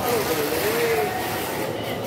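An indistinct voice in the background, drawn out and wavering in pitch, over steady surrounding noise.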